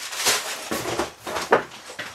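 Cardboard LEGO set boxes being lifted out of a cardboard shipping carton and handled: a series of short scrapes and taps of cardboard against cardboard.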